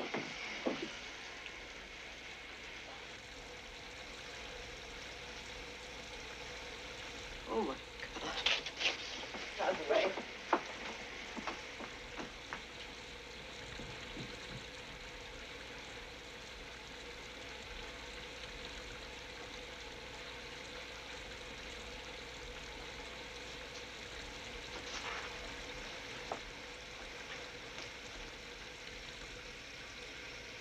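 Shower spray running steadily, a continuous hiss of falling water, with a few short, louder sounds breaking through about eight to ten seconds in.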